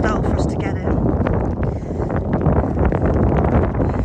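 Wind buffeting the microphone, a steady low rumble throughout, with a brief high-pitched trill in the first second.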